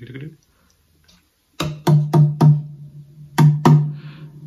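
Hand taps on the body of a Lava U carbon-composite ukulele, picked up by its built-in body microphone and played through an amplifier as a drum sound. There are four quick taps starting about a second and a half in, a short pause, then two more, each with a low ringing tail.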